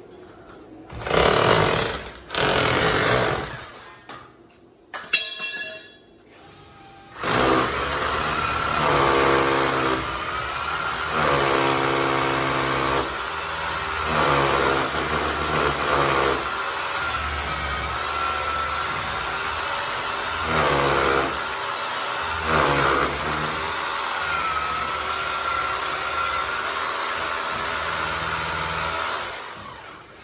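Corded electric drill boring into a plastered wall. Two short bursts come in the first few seconds, then one long continuous run of about twenty seconds with a steady whine, stopping shortly before the end.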